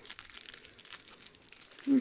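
Small plastic baggies of diamond-painting drills crinkling faintly as they are handled, in quiet irregular rustles.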